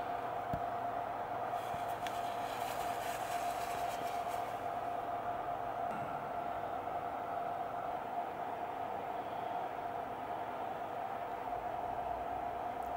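Steady whirring hum of running studio lighting gear, a fan-like drone with one held mid-pitched tone, unchanging throughout. A faint tap sounds near the start.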